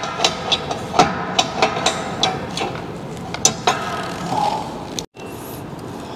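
Irregular clicks and knocks of metal frame pieces being handled and a bracket being slotted into the frame by hand, some with a short metallic ring.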